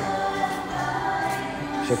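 Choir music, with voices holding sustained chords.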